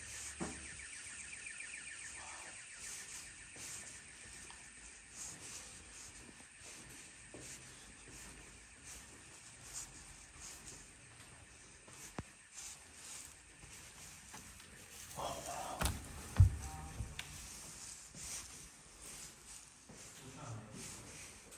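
A building's alarm sounding faintly as a steady, rapidly pulsing high tone, strongest in the first few seconds and fainter after. Scattered knocks and clicks come through it, and a heavy thump about sixteen seconds in is the loudest sound.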